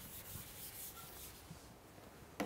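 Faint rubbing and scraping over quiet room tone.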